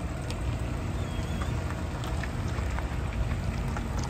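A 2020 Ford F-250's 6.2-litre gas V8 running steadily at low speed as the truck rolls slowly past, with scattered small crackles from tyres on gravel.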